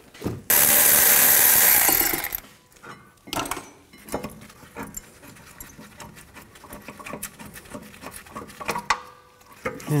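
Tool work on a minivan's rear brake caliper bracket bolts: a loud, harsh burst about half a second in that lasts nearly two seconds, as the bolts are turned out. Scattered metal clicks and knocks follow as the bracket is worked loose by hand.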